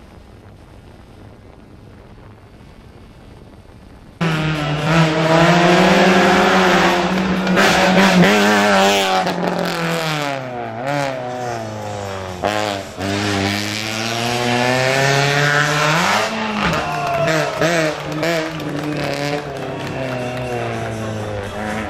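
Fiat Palio rally car engine running hard, its revs rising and falling again and again as it drives a tight stage. A faint steady hiss fills the first four seconds, then the loud engine sound cuts in suddenly.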